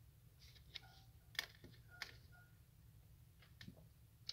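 Near silence with a few faint, short clicks and taps as a tarot card is handled and laid down.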